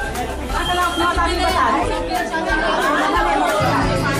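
Many people chattering at once, with background music and its bass line running underneath.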